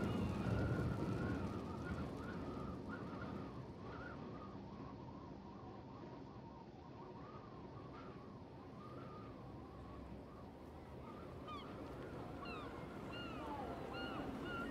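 Faint sound-effects bed under a pause in the narration: a low noisy haze that fades over the first few seconds, with wavering calls rising and falling in pitch, and a few short high calls near the end.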